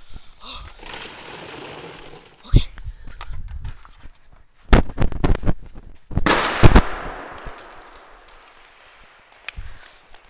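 Plastic polymer balls rustling as they are poured into a plastic trash can, a few sharp knocks about five seconds in, then a loud bang about six seconds in as a capped bottle of liquid nitrogen bursts inside the can from the pressure of the boiling-off gas. A rush of gas follows, fading over the next couple of seconds.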